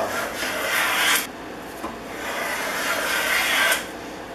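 Stanley No. 130 double-end block plane, its iron set in the bullnose end, taking shavings off the edge of a thin wooden strip held in a vise. Two cutting strokes: the first lasts about a second, the second is longer and stops just before the end.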